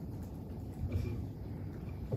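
Low, steady room rumble of a press-conference hall, with a faint, brief voice murmur about a second in.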